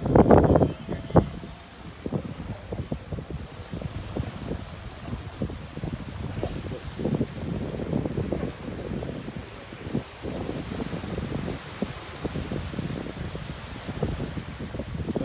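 Wind buffeting a phone's microphone in uneven low rumbling gusts, the strongest right at the start, over a faint wash of small waves breaking on the beach.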